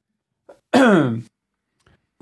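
A man clearing his throat once, a short pitched rasp of about half a second, a little under a second in; his voice is tiring and he is trying to keep it going.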